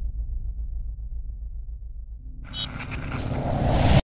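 Sound design of a news channel's logo sting: a deep pulsing rumble, then a rising whoosh that swells over the last second and a half and cuts off abruptly.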